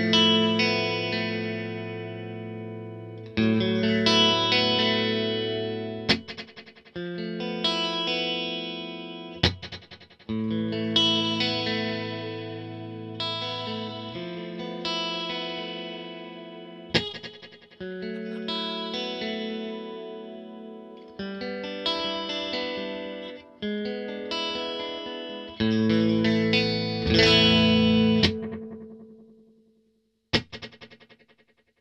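Electric guitar chords played through a Strymon El Capistan V2 tape-echo emulation pedal with its reverb switched off, into two amps in stereo. Chords are struck every few seconds and left to ring and decay, with a few sharp muted strums between them; the last chord fades out near the end.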